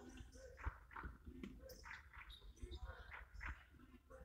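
Faint basketball court sounds: sneakers squeaking on the hardwood floor in short chirps, with a few dull thuds and distant voices.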